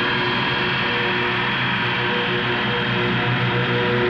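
Electric carving knife running steadily as it carves, with a low hum beneath it.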